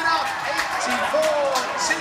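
Voices speaking, with no other sound standing out.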